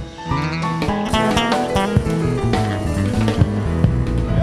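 Live band playing an instrumental passage on acoustic guitar, bass guitar, keyboard and drum kit, opening with a sharp hit after a brief dip.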